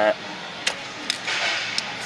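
Small plastic clicks and a brief scraping rustle as a hand tool pries at a fuel injector's electrical connector and its locking clip to unplug it.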